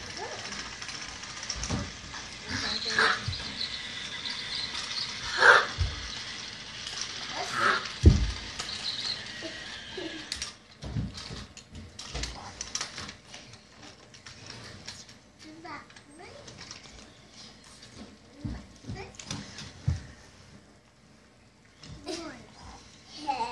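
Toddlers' short squeals and vocal sounds over a steady high whir that cuts off about ten seconds in. After that come scattered light knocks as the plastic toy train is handled on the track.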